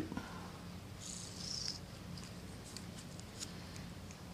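Faint handling of small 3D-printed plastic parts on a hobby servo: a brief scratchy rasp about a second in and a few light clicks, over a low steady hum.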